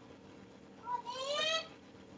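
A single short, high-pitched call, its pitch rising, lasting under a second about a second in, over faint steady background hiss.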